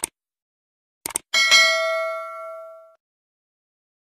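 Subscribe-button animation sound effect: a click, then a quick double click about a second in, followed by a notification-bell ding with several ringing tones that fades out over about a second and a half.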